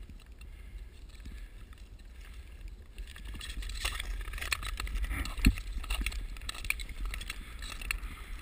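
Ice skate blades gliding and scraping on natural canal ice, over a low wind rumble on the microphone. From about three seconds in the strokes come closer and louder, with many short clicks and scrapes and one sharp knock a little after five seconds.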